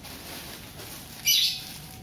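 A single short, high-pitched chirp about a second and a quarter in, over faint room background.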